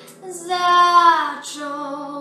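A woman singing solo, holding a long note that slides down at its end, then starting a lower note.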